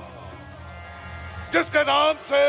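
A steady low electrical hum from a stage public-address system, with the echo of a long shouted line dying away at the start. About one and a half seconds in, a voice breaks in again over the PA with short, loud cries.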